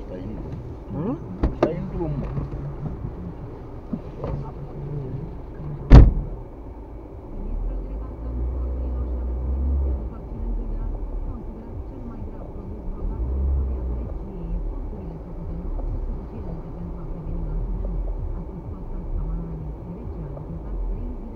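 Low engine and road rumble heard from inside a car's cabin, first waiting in traffic and then moving off, with swells of low rumble later on. A single sharp click about six seconds in is the loudest sound.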